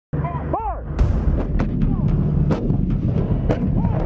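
Artillery and gunfire: a string of sharp reports over a continuous low rumble, the loudest about a second in, with a brief rising-and-falling tone at the very start.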